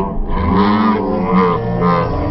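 Music from a military band relayed over outdoor loudspeakers: low, droning notes that swell and bend in pitch.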